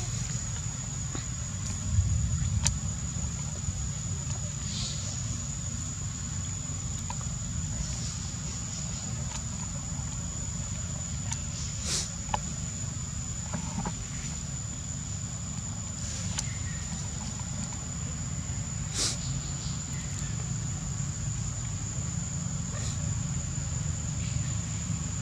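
Steady low outdoor rumble with a constant high-pitched whine above it, broken only by a few faint clicks.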